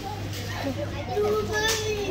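Children's voices in the background, with one child holding a drawn-out vocal sound in the second half, over a steady low hum.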